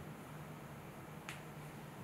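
Quiet room tone with a low steady hum, and a single sharp click a little past halfway.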